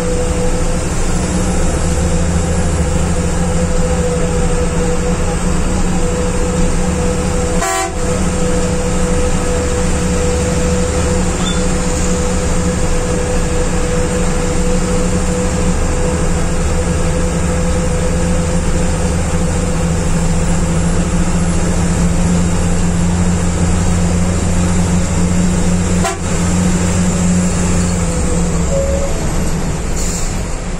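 Steady engine and road noise heard from the driver's cabin of a non-AC sleeper bus running at speed on the expressway, with a constant steady tone over it. A brief click about eight seconds in and another a few seconds before the end.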